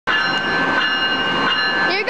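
Amtrak ACS-64 electric locomotive standing with its onboard equipment running: a steady hum with several constant high-pitched whining tones over it.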